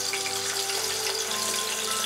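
Chicken pieces frying in a shallow layer of hot oil in a pan: a steady bubbling sizzle. Soft background music with long held notes plays over it.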